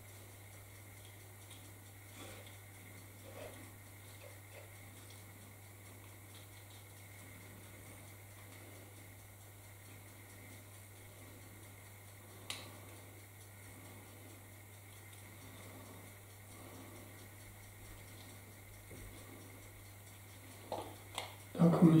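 Quiet room with a steady low hum and faint handling noises of small parts and a plastic bag, with one sharp click about halfway through.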